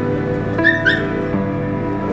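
Injured stray dog giving two short, high-pitched whimpers about a quarter second apart, over steady background music.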